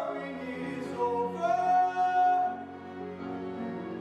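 Musical theatre singing with a live orchestra accompanying: a sung voice over sustained instrumental chords, holding one long note around the middle before the music drops in loudness near the end.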